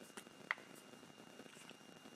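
Quiet room with a faint steady high whine and a few soft, short clicks and taps from craft supplies being handled on a tabletop.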